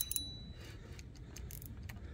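A sharp metallic click with a brief ring right at the start, then a few faint scattered clicks over a steady low rumble.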